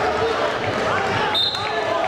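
Arena sound during a Greco-Roman wrestling bout: several voices shouting and calling out at once, with dull thuds of the wrestlers' feet and bodies on the mat.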